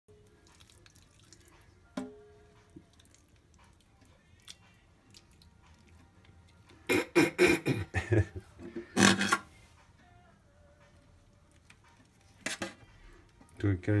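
Wet handling noises of fish being gutted by hand in a metal sink, with a sharp knock about two seconds in and two loud clusters of rapid noise bursts around the middle.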